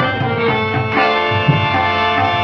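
Harmonium playing held reedy notes that shift to a new pitch about a second in, over a tabla accompaniment whose bass drum gives repeated deep strokes.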